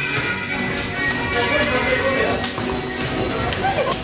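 Dance music playing loudly, with people's voices and dancers' feet tapping and stamping on the floor.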